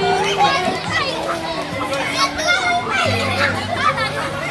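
A group of young children chattering and calling out together, lively overlapping voices, over some held background music notes.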